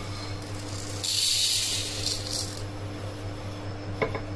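Roasted urad dal poured from a steel pan onto a steel plate: a rush of hard grains rattling and sliding on the metal for about a second and a half, starting about a second in.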